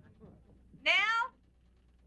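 A woman's short, high-pitched vocal exclamation about a second in, falling in pitch: a frustrated whine.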